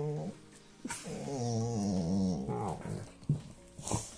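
Rottweiler grumbling: a low, drawn-out growl with wavering pitch lasting about a second and a half, just after the tail of an earlier one.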